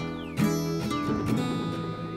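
Instrumental passage of a song: guitar chords strummed over sustained pitched tones, with a strong strum about half a second in and no singing.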